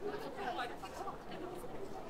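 Crowd chatter: several people talking at once, no single voice clear.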